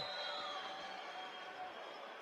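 Faint, steady background noise of an indoor arena, a low hiss and hum that slowly fades a little.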